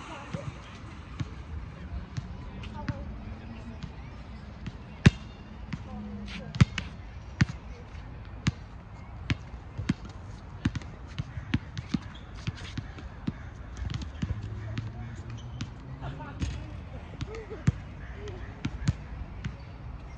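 Soccer ball being kicked and touched repeatedly on grass during one-on-one play: a run of short, sharp thuds a few times a second, the loudest about five seconds in.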